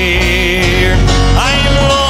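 Men's gospel group singing a country-style gospel song over instrumental accompaniment; a note held with vibrato gives way to a new phrase about one and a half seconds in.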